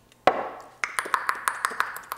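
Beatboxing. A sharp percussive hit comes first, then from about a second in a rapid run of mouth clicks, about seven a second, over a held hummed tone.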